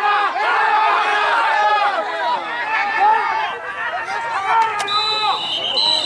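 Voices of players and people on the sideline calling out and talking over one another. Near the end, a referee's whistle blows, signalling the play dead.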